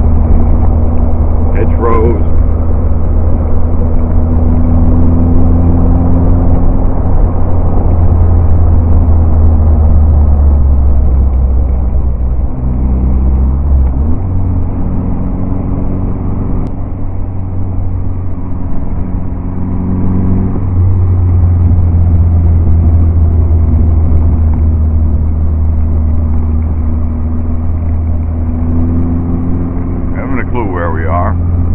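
Engine of an open vintage car running steadily at cruising speed, heard from the driver's seat over road and wind noise. The engine note dips about twelve seconds in, picks up again a couple of seconds later and shifts once more around twenty seconds in.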